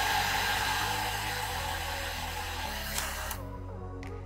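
Handheld hair dryer blowing a steady hiss that cuts off suddenly about three seconds in, over soft background music.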